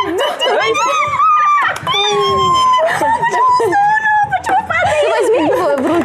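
Excited voices shouting and squealing, with several long drawn-out cries overlapping one another.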